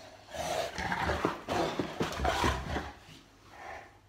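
Boerboel mastiff growling and grunting in rough play, a run of loud bursts with a few knocks of bodies colliding, fading to one quieter growl near the end.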